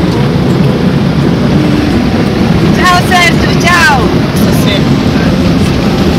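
Loud, steady rumble of a safari jeep's engine and tyres heard from inside the cabin while driving, with brief high voices sliding in pitch about three to four seconds in.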